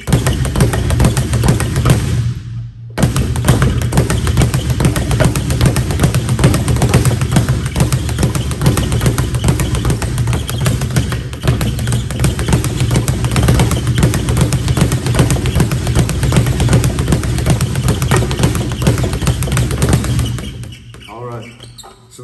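Leather speed bag on a swivel being punched in a fast, continuous rattle of rebounds off the wooden platform, with a brief break about two and a half seconds in.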